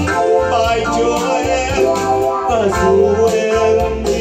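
A man singing a song through a microphone and PA, accompanied by an electronic keyboard. About two and a half seconds in, a held note slides downward.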